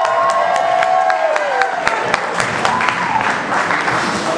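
Audience applauding, dense irregular clapping, with a few drawn-out cheering voices over the first second and a half.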